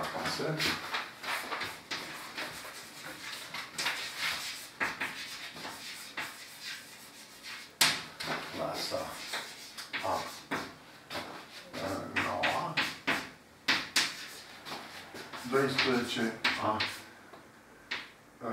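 Chalk writing on a blackboard: a quick, irregular run of sharp taps and short scratches as letters and numbers are written, with a voice murmuring now and then.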